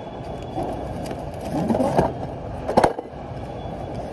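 Items being pulled and shifted out of a warehouse storage bin: a few short knocks and scrapes, the sharpest about two seconds in and again just before three seconds, over a steady low rumble.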